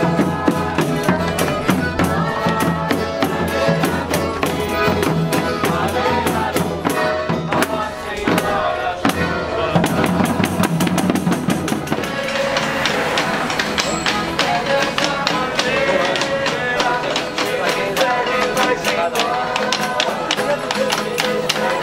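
A Folia de Reis band playing live: viola with a hand-beaten drum and tambourine keeping a fast, steady beat.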